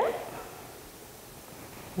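Quiet room tone: a faint, steady hiss with no distinct event.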